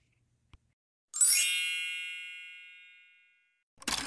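A bright, many-toned chime sound effect strikes about a second in and rings out, fading over about two seconds. Near the end comes a short shutter-like burst of noise from the video's film-style transition effect.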